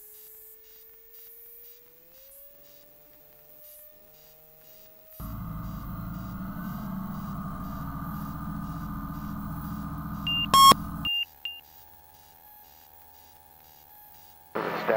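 Cockpit intercom audio of a light aircraft on a touch-and-go takeoff roll. A faint engine tone rises in pitch over the first few seconds as power comes up. Then about six seconds of louder steady hum and noise cut off suddenly, with a few short high avionics beeps just before the cutoff.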